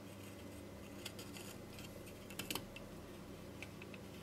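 Faint small clicks and scrapes of a plastic screw terminal block being pushed into the holes of a bare circuit board, with a single click about a second in and a quick cluster of sharper clicks about two and a half seconds in.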